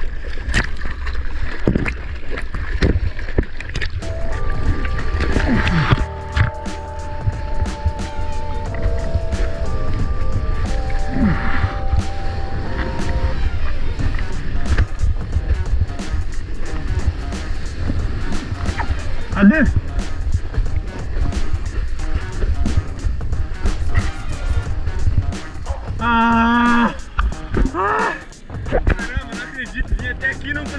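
Breaking surf and whitewash rushing over an action camera held at water level during a wave ride: a heavy, steady low rumble of water and wind on the microphone, peppered with sharp splash clicks. A man yells near the end.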